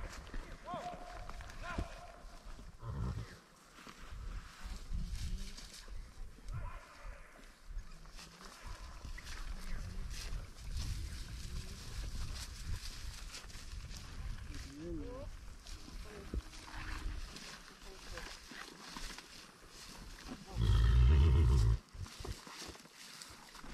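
Low rumble of movement and wind on a camera carried on horseback, with short scattered calls of a person's voice. Near the end comes one loud, close call lasting about a second.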